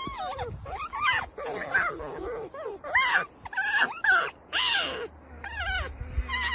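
Alpine marmots making a rapid series of short, squeaky calls that rise and fall in pitch.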